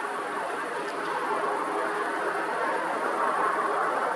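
Road traffic noise: a steady rush of passing cars, growing a little louder toward the end.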